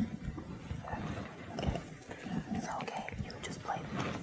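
Quiet murmured talk and whispering, with papers being handled and rustled.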